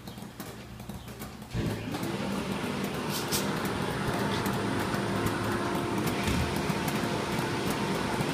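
High-flow pump of an agitated immersion parts washer starting about a second and a half in, then running steadily, with a hum and the rush of water churning in the wash tank as it flushes out part internals.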